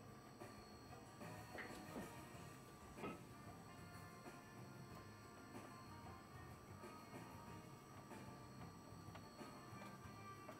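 Near silence: faint background music, with a few faint knocks from handling parts.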